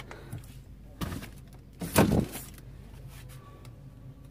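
Knocks from an open refrigerator being packed with groceries: a light knock about a second in, then a louder thump about two seconds in.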